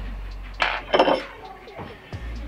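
Aluminium bait mold halves clinking as they are handled on the bench: two sharp metallic clinks about half a second apart, near the middle.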